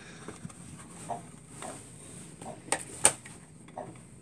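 Clicks and light knocks of a Sun 611 drive enclosure's beige case being handled and its cover worked loose, with two sharp clicks close together about three seconds in.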